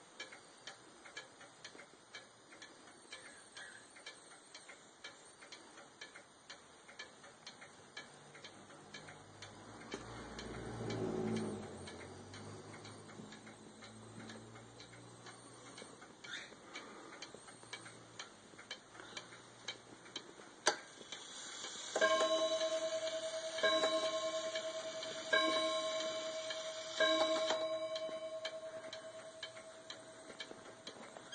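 Korean-made 31-day pendulum wall clock ticking steadily, then, about two-thirds of the way in, striking the hour four times on its coil wire gong, each stroke about a second and a half apart and ringing on between strokes.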